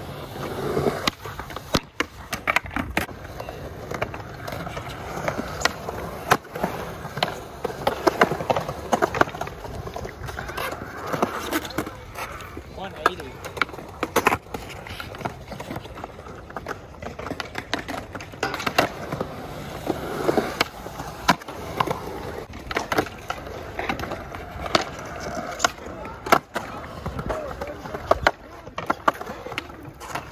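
Skateboards rolling on concrete, with many sharp clacks and slaps of boards hitting the ground scattered throughout.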